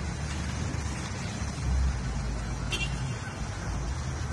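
Steady low outdoor rumble of wind on the phone microphone and road traffic. About two and a half seconds in comes a brief click, followed by a short high beep.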